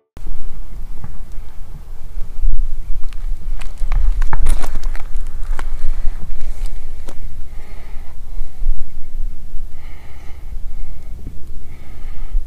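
Heavy low rumble of wind buffeting a handheld microphone outdoors, with scattered clicks and knocks from handling.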